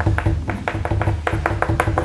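Chalk on a blackboard: a rapid, even run of short tapping strokes, about seven a second, as the tick marks of a scale are drawn.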